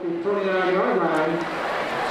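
A man's voice: the play-by-play announcer speaking, mostly one drawn-out voiced stretch with few word breaks.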